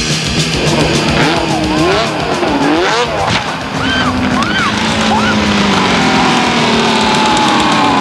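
Snowmobile engine revving up and down in quick swoops, then a long, slowly falling engine note, mixed with rock music.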